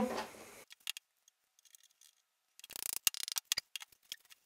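A quick cluster of faint small clicks and scrapes about three seconds in, from handling tools and wood on a workbench.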